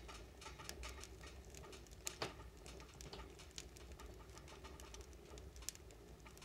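Wood fire crackling faintly inside a closed wood stove: scattered sharp pops and ticks, one louder pop about two seconds in, over a low steady hum.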